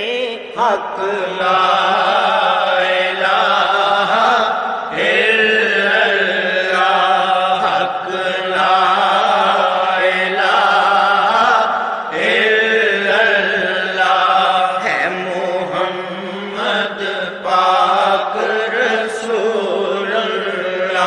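Devotional Islamic chanting: a voice singing long, ornamented, wavering melodic phrases of a few seconds each, with short breaks between them.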